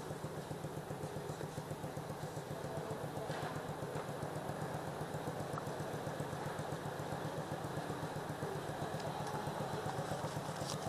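Motorcycle engine idling steadily, with an even, fast low pulsing.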